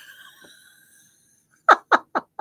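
A woman laughing: a high thin note that fades away, a second of quiet, then a few short sharp bursts of laughter near the end.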